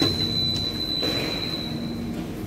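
Airport rail link train's wheels squealing on the rails with one steady high-pitched tone over a low running rumble; the squeal cuts off near the end.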